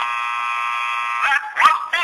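A steady buzzing tone that holds for about a second and a half, then breaks into short rising and falling glides near the end.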